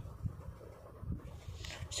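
Felt-tip pen writing a word on paper, with faint scratching strokes and soft knocks against the paper.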